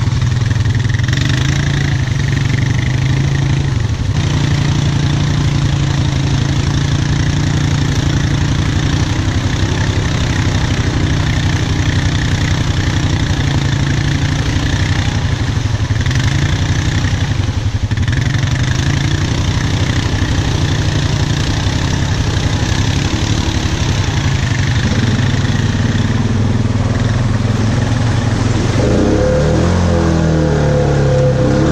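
Honda ATV's single-cylinder engine running steadily at low throttle close to the microphone, then revving up near the end as the quad drives into a mud hole.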